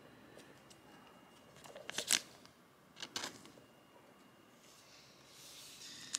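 Faint crinkling of a soft plastic penny sleeve as a trading card is slid into it, in two short rustles about two and three seconds in.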